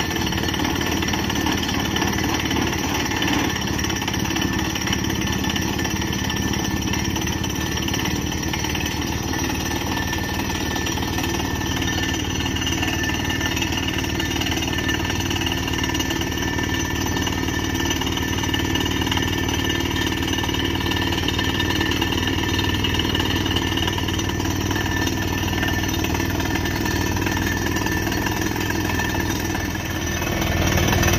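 Truck-mounted borewell drilling rig drilling with compressed air: the down-the-hole hammer pounds rapidly and the air blows rock dust out of the borehole, over the rig's engine running. The noise is loud and steady throughout.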